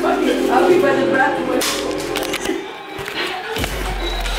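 Indistinct voices with music faintly behind them, a single knock about one and a half seconds in, and a low rumble starting near the end.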